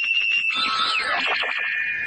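A short electronic musical transition sting. High held tones start suddenly, glide downward about half a second in, then settle into a steady high tone.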